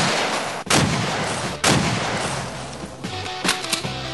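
Three loud bangs about a second apart, each trailing off in a long echo, followed by a few lighter cracks near the end, with music underneath.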